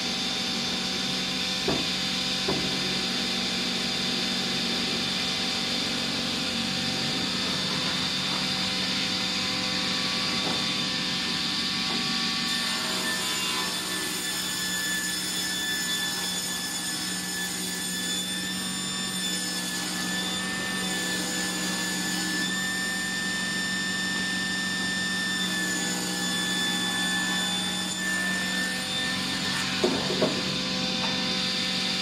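Sliding-table circular panel saw running steadily while its blade rips along paulownia slab-edge offcuts to edge them into boards. A higher whine joins about halfway through, and there are two light knocks near the start.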